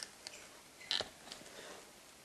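Faint handling noise from a rubber gas mask turned in the hand close to the microphone: a soft click at the start and a sharper click about a second in, with a few lighter ticks.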